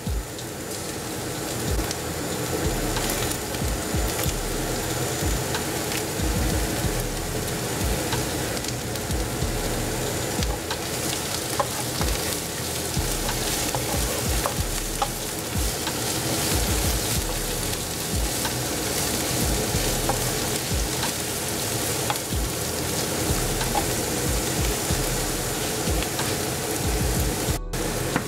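Chopped spring onions and red onion sizzling steadily in hot oil in a nonstick frying pan, stirred with a wooden spoon.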